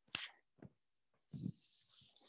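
A couple of footsteps, then a soft thump about one and a half seconds in as a chalkboard eraser starts rubbing across the board in a steady scratchy wipe.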